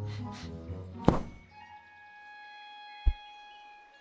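Animated-film soundtrack: sustained orchestral notes with Foley impacts as a large cartoon rabbit squeezes out of a burrow. There is a loud thump about a second in and a short, deep thud about three seconds in.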